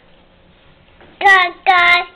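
A toddler's voice giving two short, high, sing-song notes in quick succession about a second in, each held at a steady pitch.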